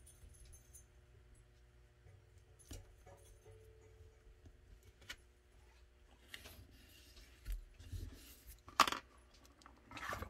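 Quiet handling sounds of blue painter's tape being pressed and smoothed by hand over a pistol holster mold: faint rubbing and scattered small clicks, with a sharper click about nine seconds in.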